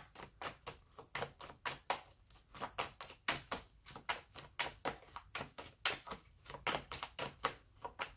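A tarot deck being shuffled by hand: a quick, uneven run of soft card slaps and flicks, about four a second.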